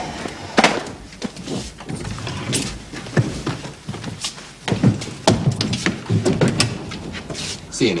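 Men's voices talking indistinctly, with scattered knocks and shuffling as people move about.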